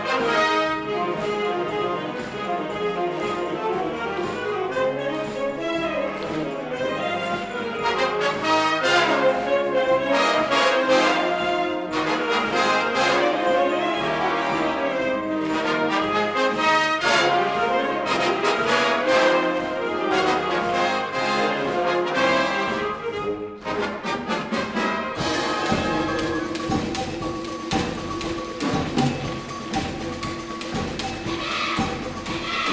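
School concert wind band playing, with brass and saxophones to the fore over percussion; the music dips briefly about 23 seconds in, then carries on.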